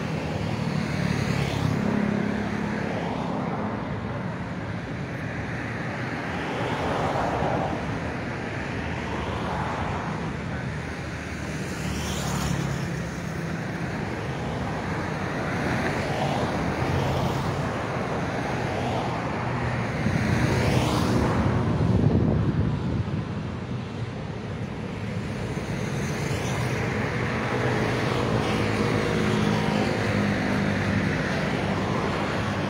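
Road traffic going by steadily, with cars sweeping past one after another; the loudest pass comes about 21 seconds in.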